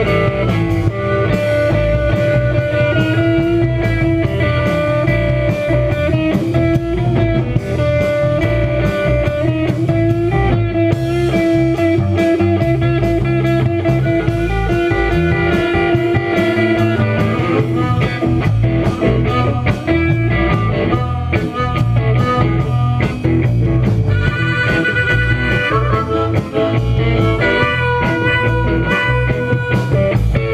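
A live rock band playing: electric guitars with long held notes over bass and a drum kit, loud and continuous.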